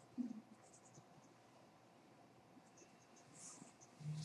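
Near silence: room tone with faint, scattered clicks of computer keys, and one brief low sound just after the start.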